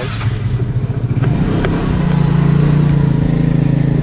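An engine running with a steady hum, rising a little in pitch and loudness about a second and a half in. A few light clicks of a screwdriver turning a screw come through over it.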